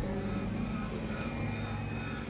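Experimental electronic drone music: a steady low hum with several sustained tones held above it.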